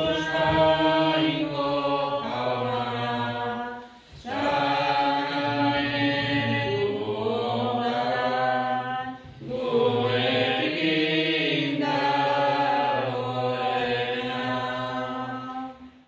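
Slow sung hymn in long held phrases, three of them, with short breaks for breath about four and nine seconds in. The last phrase ends just before the close.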